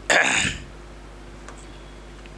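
A man clearing his throat once, briefly, right at the start, followed by a low steady room hum with a faint click.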